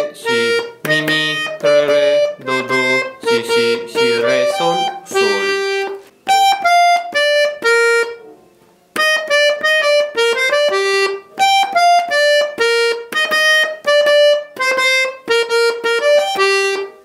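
Jupiter button accordion (bayan) playing a quick melody of short, separate notes: the accordion solo of the song, on the right-hand buttons. The playing pauses for about a second near the middle.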